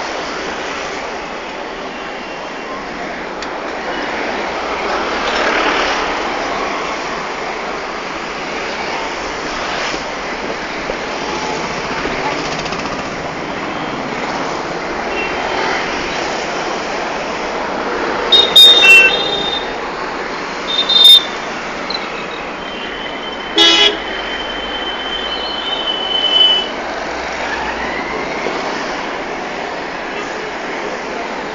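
Street traffic noise, a steady wash of engines and road noise, with vehicle horns tooting in the second half: a few short, loud toots, then a longer held horn.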